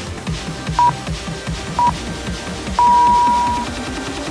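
Workout interval timer counting down: two short beeps a second apart, then a longer beep marking the start of the next exercise, over electronic background music with a steady beat.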